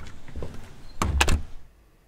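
A door being handled and shut: a few light knocks, then a louder cluster of sharp knocks about a second in as it closes.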